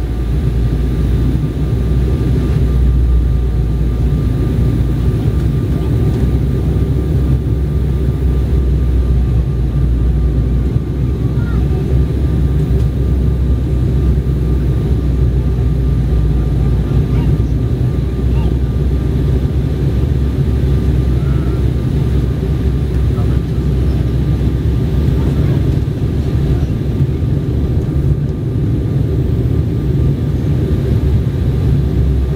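Steady low rumble of cabin noise inside an Embraer 190 airliner on its descent, from its CF34 turbofan engines and the airflow over the fuselage, with a thin steady high tone above it.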